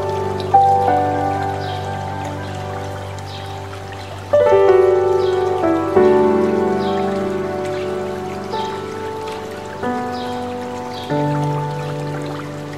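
Slow, gentle solo piano music: notes and chords struck every few seconds and left to ring and fade, over a steady rush of running water.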